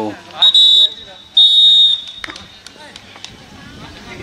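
Referee's whistle blown in two short, shrill blasts about a second apart, as a goal is given.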